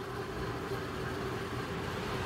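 Steady low background hum with a faint constant tone and no distinct events.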